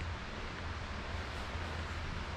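Steady rush of a shallow creek's water flowing over shale ledges, even and unbroken, with a low rumble beneath it.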